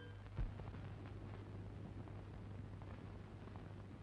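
Faint steady hiss and low hum of an old film soundtrack between pieces of music, with one soft low thump about half a second in.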